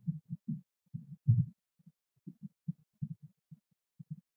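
Faint, irregular low thumps and taps, several a second, from a small brush dabbing metallic wax patina onto a raised craft plaque and from the plaque being handled and set down on the worktable.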